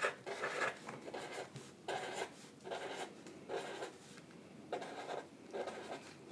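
Black felt-tip markers scratching faintly on paper in a series of short strokes, drawing small circles one after another.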